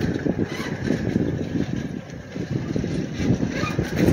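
Wind buffeting the microphone of a hand-held camera being carried: an unsteady low rumble that swells and dips.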